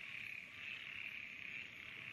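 Night chorus of frogs and insects from a flooded rice field: a faint, steady high-pitched trilling that swells and fades slightly.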